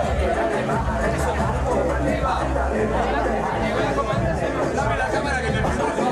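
Crowd chatter in a packed, noisy bar, many voices at once, with music playing underneath and a strong, steady bass.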